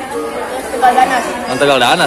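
Several people talking in a large tiled hall, voices overlapping in indistinct chatter.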